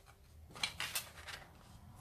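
Faint rustle and scrape of brown card stock being handled and laid over onto a glued piece, with a few short scratchy strokes about half a second to a second in.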